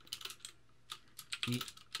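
Typing on a computer keyboard: quick, irregular runs of key clicks.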